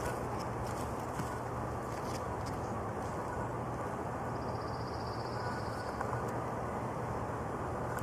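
Steady outdoor background noise with a low hum and no distinct event; a faint high-pitched buzz sounds briefly in the middle.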